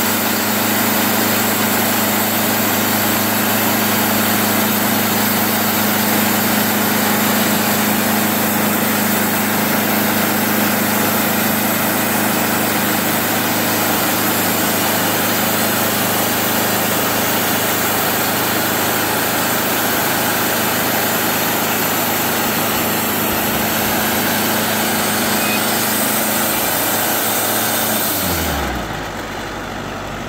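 Portable band sawmill running steadily under load as its band blade saws through a timber, engine and cutting noise together. Near the end the engine note falls away as the mill throttles down.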